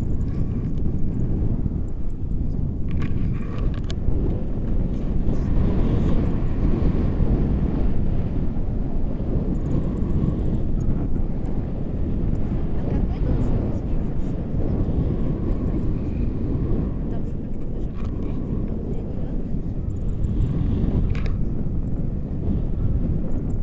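Steady low wind noise buffeting the microphone of an action camera carried through the air on a tandem paraglider in flight.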